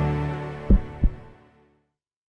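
Logo intro music with held low notes fading out over the first second and a half, with two short low thumps about a third of a second apart near the middle.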